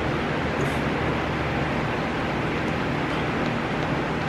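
Steady room noise with no speech: an even hiss with a low hum underneath and no distinct events.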